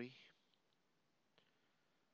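Near silence: room tone, with one faint computer mouse click about one and a half seconds in.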